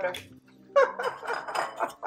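A woman's voice, laughing, over soft background music.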